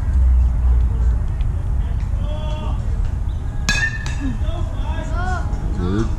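A metal baseball bat strikes the ball once, a sharp ringing ping about two-thirds of the way through, over wind rumble on the microphone and voices from the crowd and dugout.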